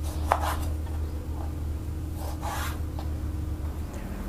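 Chef's knife cutting raw pork leg meat and skin on a wooden cutting board: a few drawn cuts about a second apart, with short sharp clicks of the blade on the board about a third of a second in and again near three seconds.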